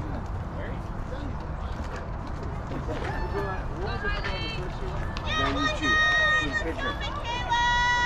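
Young girls' high-pitched voices calling out and cheering across a softball field, with two long held shouts in the second half. A steady low rumble runs underneath.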